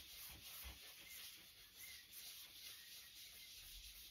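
Faint rubbing of a balled-up scrim wiped back and forth over an inked collagraph plate, pushing the ink into the plate's textured brush strokes.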